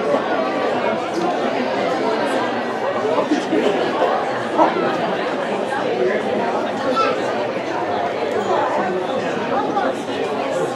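Indistinct chatter of many people talking at once, a steady babble with no single voice standing out.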